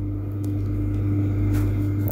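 A steady low mechanical hum with a thin higher tone over it, like a running motor or engine, holding even through the pause.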